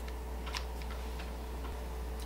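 A few faint, light ticks of small handling noise, from a makeup brush and eyeshadow compact being handled, over a steady low hum.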